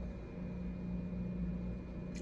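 Steady low machine hum with a faint hiss, unchanging throughout.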